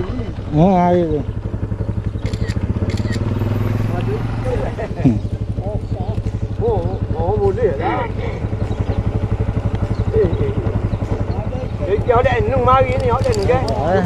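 Small motor scooter engine idling steadily with a fast, even beat, while men's voices talk over it.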